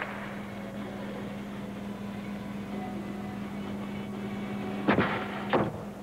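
Arena background noise with a steady low hum; about five seconds in, two sharp thumps half a second apart, a gymnast punching off the springboard and landing a front salto mount on the balance beam.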